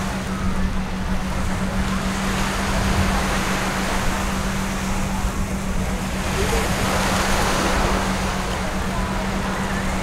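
Gentle surf washing onto a sandy beach, with wind buffeting the microphone as a low rumble. A steady low hum runs underneath.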